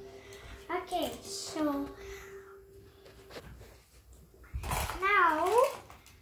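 A young boy's voice in two short wordless vocal bursts, one about a second in and a louder one with a swooping up-and-down pitch near the end.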